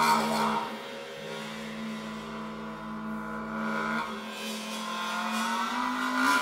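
A suspended cymbal bowed along its edge, giving a sustained, shimmering high ring, over held low tones from the ensemble in a contemporary chamber piece. The lower of two held tones drops out about four seconds in.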